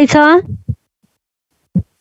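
A brief spoken utterance, then two short low thumps about a second apart.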